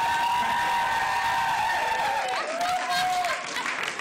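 Live concert audience applauding and cheering, with a long high held tone over the top, then a shorter, lower one near the end.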